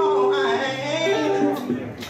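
A man singing a long, wavering note over acoustic guitar accompaniment; the voice drops away near the end.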